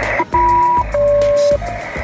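SELCAL tones received over an HF radio: two pairs of simultaneous steady tones, each about half a second long with a short break between, sent through a steady hiss of radio static. They are the ground station calling the aircraft's SELCAL code as an operational check of the newly repaired HF radio.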